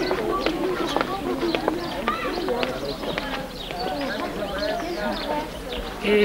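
Outdoor background of indistinct people's voices with birds chirping and calling throughout.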